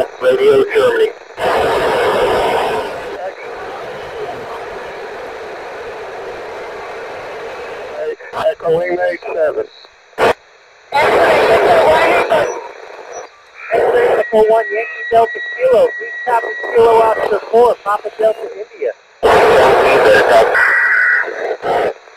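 FM amateur-satellite downlink through the transceiver's speaker: short, garbled bursts of several operators' voices, with hiss from a weak signal in between. During one transmission a steady whistle tone sits under the voices.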